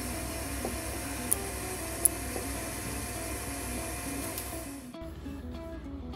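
Soft background music over a steady hiss of room or machine noise, with two brief clicks early on. The hiss drops away at a cut about five seconds in.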